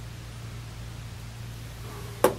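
Steady background hiss with a low hum and no distinct sound event: the recording's room tone.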